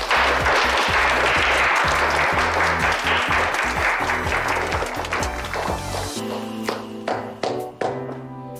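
A small group of people applauding over background music; the clapping starts at once and dies away after about six seconds, leaving the music with a few sharp struck notes.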